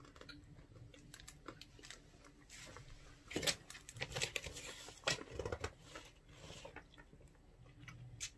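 Faint rustling and crinkling of paper and snack packaging being handled, with scattered small clicks and taps, busiest a little past the middle.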